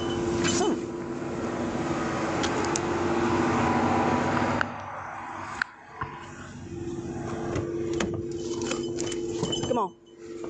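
Rustling, scraping and clicking of a body-worn camera being jostled against clothing during a scuffle, over a steady low hum that breaks off briefly near the middle.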